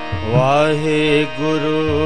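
A man singing Sikh devotional kirtan, his voice entering just after the start on a long, wavering, ornamented line over steady instrumental accompaniment.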